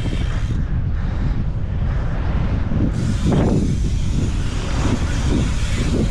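Strong gusty wind buffeting the action camera's microphone, over the rolling rumble of BMX tyres on an asphalt pump track. The wind noise is loudest throughout, with a brief swell about three seconds in.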